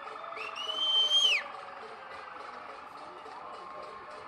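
Street noise with a police vehicle's electronic siren sounding steadily at first, then fading. The loudest sound is a single shrill, high-pitched tone about a second long, starting near the beginning, that rises, holds, then drops off sharply.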